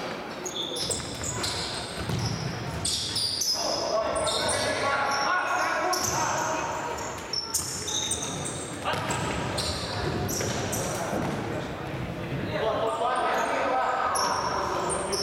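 Futsal players' shoes squeaking repeatedly on the sports-hall court floor as they run and turn, short high-pitched squeaks scattered through the play, echoing in the large hall.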